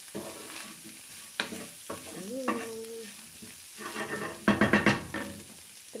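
Wooden spoon stirring and scraping corned beef and diced potatoes in a frying pan over the sizzle of the food frying, with a quick run of scraping strokes a little before the end.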